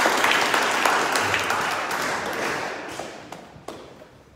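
A small audience applauding, a dense patter of claps that dies away near the end.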